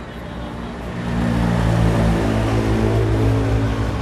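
A vehicle engine running nearby: a steady low hum that grows louder about a second in and then holds.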